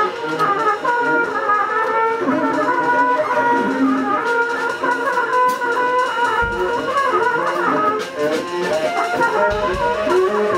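Free-improvised jazz: a trumpet plays held, wavering lines over double bass and drums with scattered cymbal and drum hits. Low thumps come about six and a half seconds in and again near the end.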